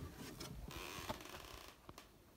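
Faint rustling handling noise with a few light clicks, with a slightly brighter hiss in the middle.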